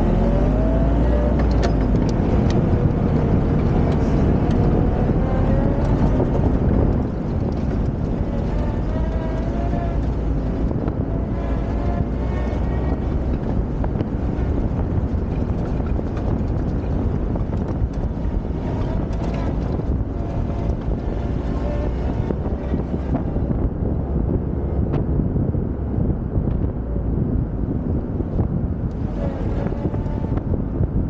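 Austin Champ with its Rolls-Royce four-cylinder engine driving along, the engine and drivetrain running with a whine that rises and falls in pitch with the revs. A heavy low rumble drops away about seven seconds in.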